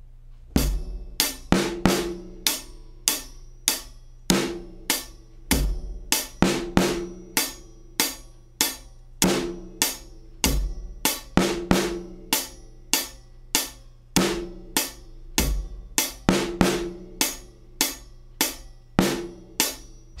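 Taye GoKit drum kit playing a steady groove: hi-hat eighth notes with bass drum, and the snare, damped with a cloth on its head, hit on the backbeats plus a syncopated stroke on the last sixteenth of beat one, just before beat two.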